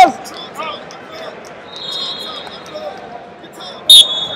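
A loud shout right at the start, over steady arena hubbub. A shrill referee's whistle sounds briefly around two seconds in and again with a sharp loud blast near the end, signalling the restart of the wrestling.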